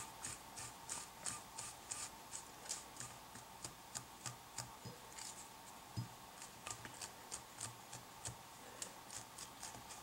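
Faint, rapid strokes of a small stiff brush raked through the fur fibers of a twisted-wire dubbing brush, about three strokes a second, freeing fibers trapped in the wire.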